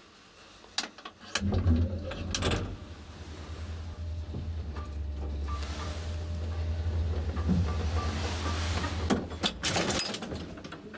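Old ASEA traction elevator starting and running: a few sharp relay and brake clicks about a second in, then a steady low motor hum while the car travels. The hum ends about nine seconds in, followed by another burst of clicks as the car comes to a stop.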